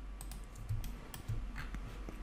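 A few faint, separate clicks of computer mouse and keys, over a steady low hum.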